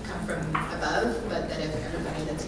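Indistinct speech: people talking in a large room, the words not clear enough to follow.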